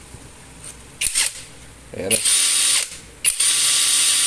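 Topshak cordless impact driver triggered without a load, with a short blip about a second in, then two runs of about a second each. The motor and gearing whirr with a steady high whine.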